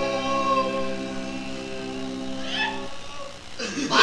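A band's song ending on a long held chord that cuts off about three seconds in, followed near the end by a short voice-like sound.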